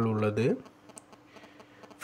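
A voice speaking for about half a second, then near silence: faint room tone with a low steady hum and a few faint clicks.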